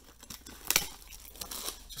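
Loose plastic shrink-wrap from a trading-card blaster box crinkling as it is handled, with one sharp crackle about three-quarters of a second in and a few light clicks.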